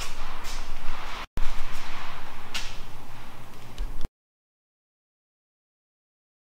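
Steady workshop room noise with a low hum and a few faint knocks, broken by a brief dropout about a second in, then cutting out to dead silence about four seconds in.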